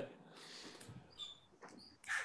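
Faint, breathy laughter heard over a video-call line, trailing off with a few short squeaky bits.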